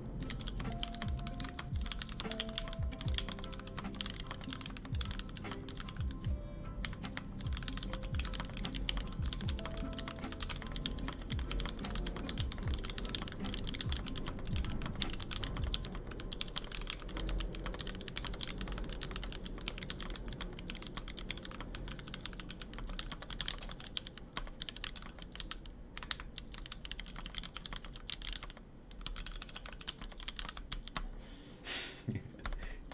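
Continuous fast typing on a Daisy 40 mechanical keyboard built with H1 switches: a steady stream of key clacks throughout.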